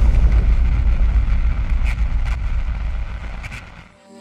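A deep cinematic boom-and-rumble sound effect for an animated fire-and-smoke logo reveal, slowly fading out near the end, with a few faint crackles.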